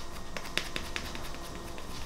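A makeup cushion puff loaded with cushion foundation being patted rapidly against the cheek: a quick, uneven run of short taps, several a second.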